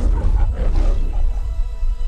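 The MGM lion's roar, loud and raspy over deep bass, dying away about a second and a half in. A sustained music chord holds under and after it.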